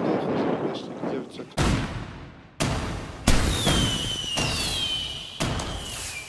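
Fireworks sound effect: four bangs starting about one and a half seconds in, with a high whistle slowly falling in pitch through the second half.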